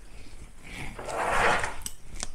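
Sheets of printer paper rustling as they are handled, a swell of rustle about a second long, followed by a couple of light clicks near the end.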